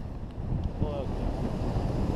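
Wind noise from the airflow buffeting the microphone of a hang glider in gliding flight, a low rumbling rush that grows louder toward the end.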